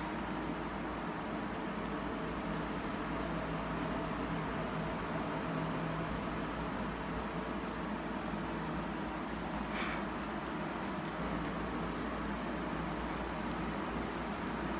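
Steady background noise, an even hiss with a low hum, and one brief faint rustle about ten seconds in.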